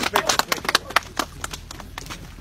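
A small group of people clapping, with one last shout of "bravo" at the start; the applause thins out to a few scattered claps.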